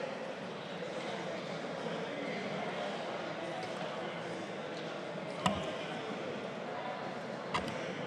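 Indistinct murmur of many people talking at once in a large, full legislative chamber, with a sharp knock about five and a half seconds in and a fainter one near the end.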